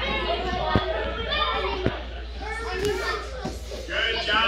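Children's voices talking and calling out, with two light knocks, one a little under a second in and another about two seconds in.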